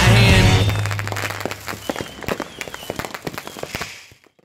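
A rock song fading out over the first two seconds, leaving fireworks crackling and popping in quick, irregular bursts until the sound cuts off at the end.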